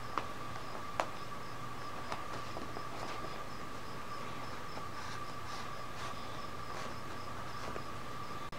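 Steady background hum with a constant faint tone, broken by a few soft clicks and rustles as a plastic zip tie is threaded through the fabric neck sleeve of a doll's cloth body.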